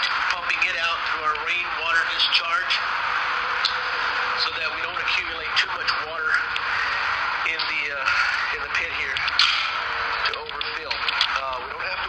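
Indistinct voices talking over the steady hiss of a pressure washer's water spray.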